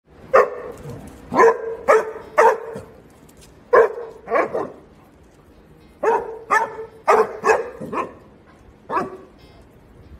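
Basset hound barking, about a dozen short barks in groups of two to four, stopping about nine seconds in.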